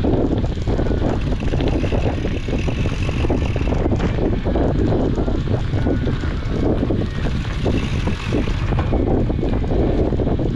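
Wind rushing over an action camera's microphone as a mountain bike rolls along a dirt singletrack, with steady tyre rumble and frequent small knocks and rattles from the bike going over bumps.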